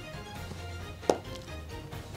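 Soft background music with a steady bass line, and one sharp, short knock about a second in, followed by a brief falling tone.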